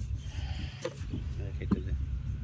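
Hand-moulding of mud bricks: wet clay worked into a wooden brick mould, with two dull knocks, the second and louder one near the end, over a steady low rumble. A brief bleat-like call is heard in the middle.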